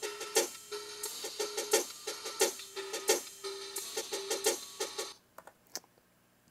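A hi-hat loop played back from an MPC Live drum machine: a quick, even pattern of crisp hi-hat hits with a short pitched note recurring under some of them. It stops about five seconds in.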